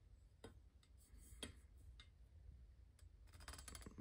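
Near silence, with a few faint clicks about a second apart and a short cluster near the end, from the metal poles of an animatronic's frame being handled and hooked together.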